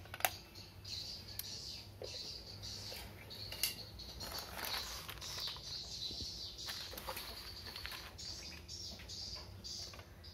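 A few sharp plastic clicks and knocks from a small USB tester and a plug-in adapter being handled, the loudest just after the start and about three and a half seconds in. Birds chirp repeatedly in the background over a faint steady low hum.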